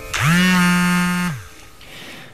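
A mobile phone vibrating once as a message comes in: the buzz winds up in pitch as it starts, holds steady for about a second, then stops.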